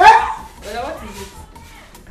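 A loud, excited shout from a person right at the start, followed by quieter short vocal sounds.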